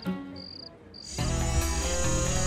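Short trills of cricket chirping over a quiet pause. About a second in, background music comes in, with a bass line and sustained high tones.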